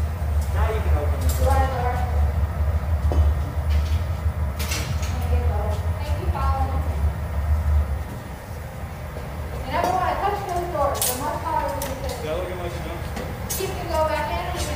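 Glassblowing hot-shop sounds: a low, steady rumble that cuts off about eight seconds in, sharp clinks of metal tools now and then, and faint voices in the room.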